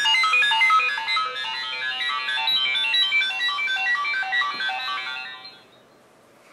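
A short music jingle of fast, bright, chime-like notes in quick succession, much like a ringtone, starting abruptly and fading out near the end.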